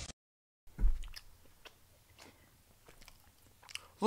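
Faint mouth noises in a small quiet room: a soft thump about a second in, then a few scattered small clicks like chewing and lip smacks.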